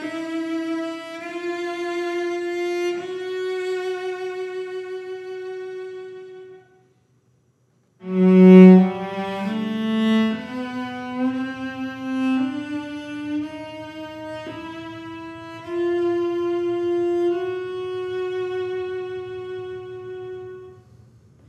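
Giovanni Viotti GV-790 cello played with the bow, in a comparison of its original Belgian-style bridge with a new French-style bridge. A slow phrase of long, sustained notes dies away about six seconds in. After a brief silence, a second phrase begins about eight seconds in, loudest at its opening notes.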